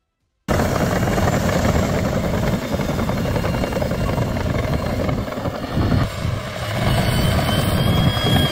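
John Deere 1050K crawler dozer working: the diesel engine and steel tracks make a loud, steady rumble that starts abruptly about half a second in. A faint high squeal is heard near the end.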